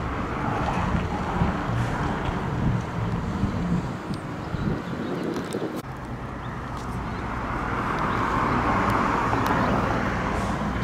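Road traffic with wind noise on the microphone; a vehicle sound swells gradually louder through the second half.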